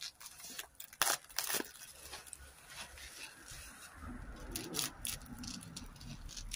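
White paper wrapping and masking tape being torn and crinkled by hand while unwrapping a newly chromed bumper part, with two sharp rips about a second in and lighter crackling after. A low rumble comes in during the second half.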